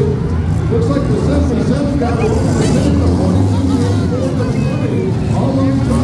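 Demolition derby cars' engines running with a steady low drone, under a crowd's chatter.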